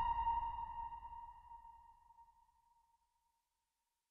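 The song's final keyboard note, a single clear tone, ringing out and fading away over about two seconds.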